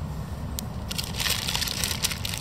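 Paper food wrapper around a chicken wrap crinkling and rustling as it is handled, in a dense burst about a second in, over a low steady rumble.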